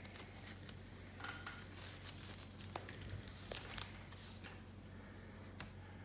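Faint handling noises: scattered light clicks and short rustles as small art supplies, likely alcohol ink bottles, are picked up and readied, over a steady low room hum.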